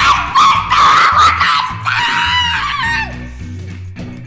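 A young girl's long, high-pitched shriek, falling away in pitch about three seconds in, over background music with a steady beat.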